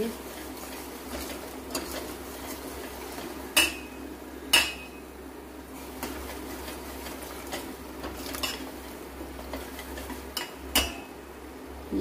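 A steel spoon stirring and scraping thick masala in a stainless steel pot, with a few sharp metal clinks of the spoon against the pot, the loudest about four and a half seconds in.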